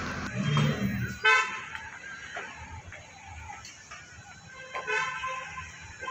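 Vehicle horns honking on a city street: a short, loud toot about a second in and a weaker one near five seconds, over faint traffic noise.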